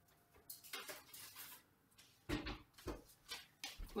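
A metal baking tray being drawn out of an oven, with a scraping stretch in the first half. Several knocks and thuds follow in the second half as the tray and oven are handled.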